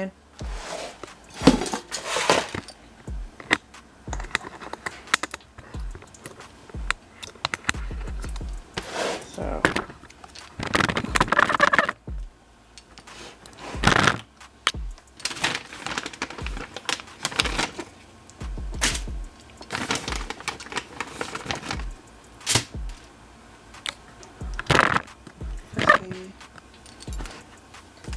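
Kitchen handling noises: irregular knocks, clatters and rustles as the camera and cooking things are moved about, with voices in the background.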